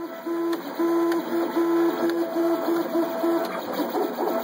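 MakerBot Replicator 5th generation 3D printer's stepper motors whining in a run of short tones of the same pitch, about two to three a second, as the print head moves back and forth laying down the first raft layer. The pattern turns more irregular near the end.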